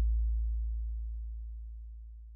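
A lone deep sub-bass tone from the end of a DJ remix, fading steadily away.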